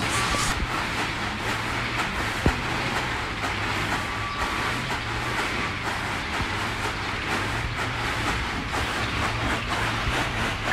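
Rice grain being winnowed with round woven bamboo trays, pouring from the trays onto a concrete floor in a steady sandy hiss, over a low steady hum.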